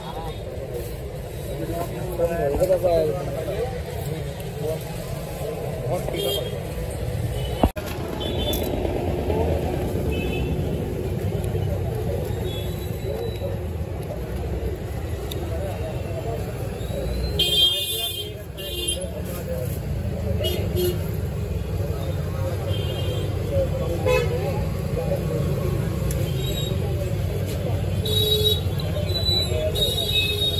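Street-side background din of indistinct voices and traffic, with a vehicle horn honking briefly about two-thirds of the way through.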